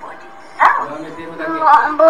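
A young child's voice: a sudden high yelp that falls in pitch a little over half a second in, then more high vocal sounds that carry on.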